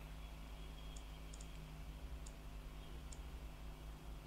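About six light, sharp clicks at irregular intervals, two of them in quick succession about a second and a half in, over a faint steady hum.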